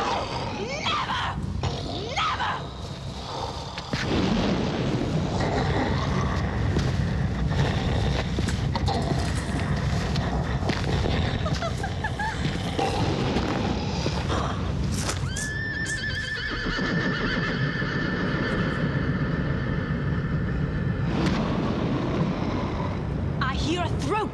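Horse whinnying, standing in for a captive unicorn, heard at the start and again near the end over a dense, loud film soundtrack.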